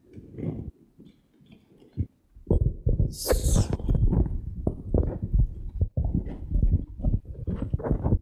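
Microphone handling noise: low rumbling, rubbing and knocks on a presenter's microphone, growing loud and dense from about two and a half seconds in, with a brief rustle just after.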